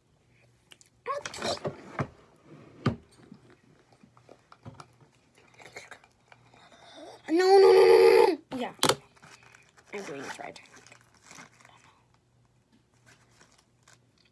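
A girl's voice giving one drawn-out, wordless vocal sound about a second long, a little past the middle, amid scattered rustling and a few sharp clicks from things being handled.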